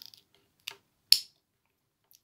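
Two small plastic clicks as a grinding attachment is pushed into the handpiece of a Vitek VT-2216 manicure device: a faint one, then a sharp louder one about a second in as the bit seats. The motor is not running.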